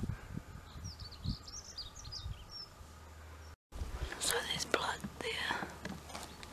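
A small bird chirping a quick run of short, high, sliding notes, then, after an abrupt cut, close whispering with rustling and handling noise.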